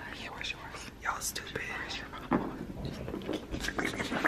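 Hushed whispering voices with a few faint handling clicks.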